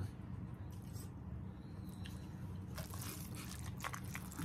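Quiet eating sounds: noodles being slurped and food chewed, with a few short wet smacks, most around three seconds in, over a steady low hum.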